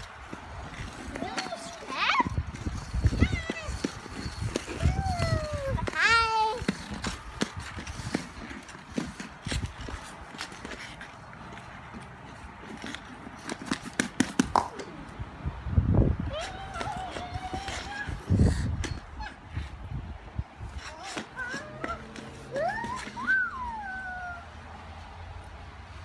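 Young children's high-pitched voices, calls and squeals several times, with low knocks and scrapes in between.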